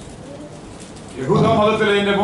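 A pause with low room tone, then a man's voice through a microphone from about a second in, drawn out in a held, sing-song tone.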